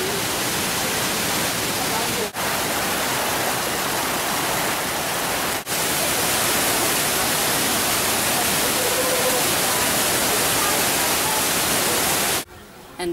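Steady rush of a waterfall cascading close by, a loud even wash of water noise. It breaks off for an instant twice, about two and five and a half seconds in.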